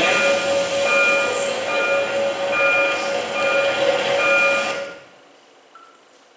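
Soundtrack of a film crowd scene played over the lecture room's speakers: a dense, loud din with a short high tone repeating about every half second. It cuts off suddenly about five seconds in, when the clip is stopped, leaving only faint room hum.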